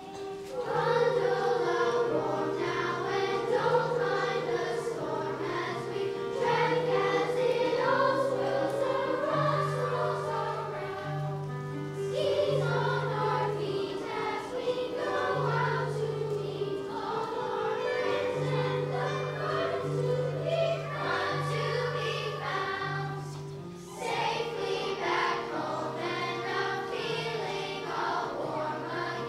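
Children's choir singing in unison with instrumental accompaniment, a line of low held bass notes under the voices. The phrase breaks off briefly about twelve seconds in and again near the end before the singing resumes.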